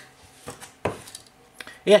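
A few light plastic clicks and knocks from a ThinkPad laptop being handled on its docking station, the loudest just under a second in.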